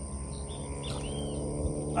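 Quiet outdoor ambience: a steady high insect drone over a low hum, with a faint bird chirp about a second in.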